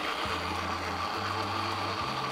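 Countertop blender motor running steadily, chopping raw chicken breast into a purée.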